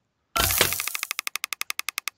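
Website box-opening sound effect: a loud crack-like burst as the boxes open, then a rapid run of ticks, about twelve a second, as the prize reels spin past.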